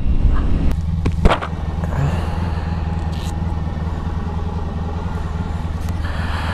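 Honda ST1100 Pan European's V4 engine idling steadily at an even pitch, with a sharp click about a second in.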